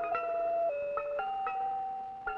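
Title music: a slow melody of sustained tones over chiming struck notes. The melody note drops about two-thirds of a second in and rises again half a second later.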